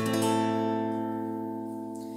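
Acoustic guitar: an A minor barre chord at the fifth fret strummed once at the start and left ringing, fading slowly.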